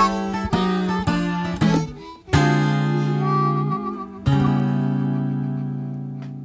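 Acoustic blues guitar ending the song: a few quick plucked notes, then two full chords struck about two and four seconds in. The last chord rings on and slowly fades out.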